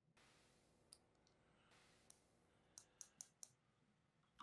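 Faint snips of small fly-tying scissors trimming the corners off a foam fly head, about six light clicks with a quick run of four in the second half.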